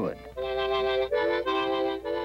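Harmonica playing held chords, several reed notes sounding together. The chord starts shortly after a brief pause and changes twice in the second half.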